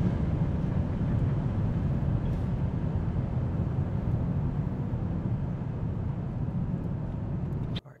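Steady low rumble of road and wind noise inside the cabin of a moving Tesla Model S Plaid. It cuts off suddenly near the end.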